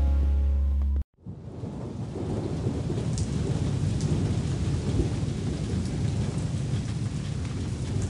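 Cartoon sound effect of steady rainfall with a low rumble beneath it, fading in about a second in. Before that, a children's song plays and then cuts off abruptly.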